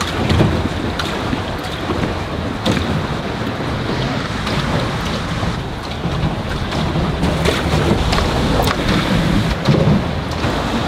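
Steady rushing noise of wind on the microphone and water moving around a swan-shaped pedal boat under way on a lake, with a few light knocks.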